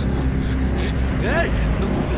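Action-film background score: a deep, steady bass drone, with a brief voice gliding up and down about a second and a half in.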